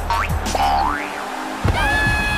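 Cartoon sound effects over background music: a short rising glide in pitch, then a longer one that rises and falls back, following the kicked football as it flies at the goal.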